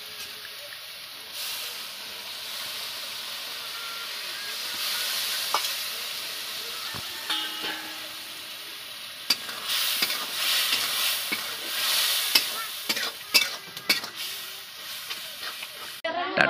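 Spice and onion paste frying in oil in a steel kadai, sizzling steadily. From about halfway through, a metal ladle stirs it, with a run of sharp scrapes and knocks against the pan.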